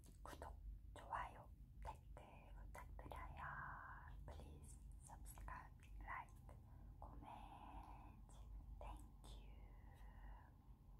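A woman whispering softly into the microphone in short phrases, with small clicks between them.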